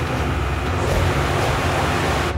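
Several motorboats speeding past on a river: engines running under a dense rush of spray and wake, swelling louder through the moment.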